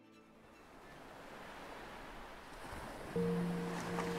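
Sea surf and wind noise fading in and growing louder. About three seconds in, a low sustained note of background music enters and holds.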